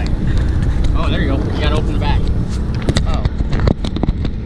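A laugh, then wind buffeting the microphone of a hand-held GoPro camera as a low rumble. Near the end come several sharp knocks and rubs from fingers handling the camera body.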